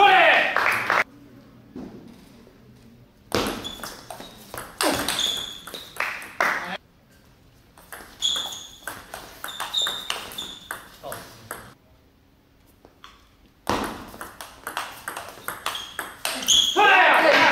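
Table tennis ball clicking back and forth between the table and the rubber-covered bats in three bursts of rapid exchanges, with quiet pauses between them.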